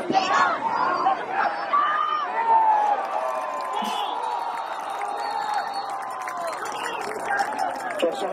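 Football crowd and sideline yelling and cheering as a kickoff is run back and the returner tackled, many voices overlapping. In the middle one voice holds a long shout for about four seconds.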